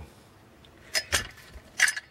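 Metal clinks from steel car seat runners and hand tools being handled on a bench: two light knocks about a second in and another near the end.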